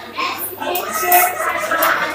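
A woman speaking into a handheld microphone, her voice carried over a PA in a busy room.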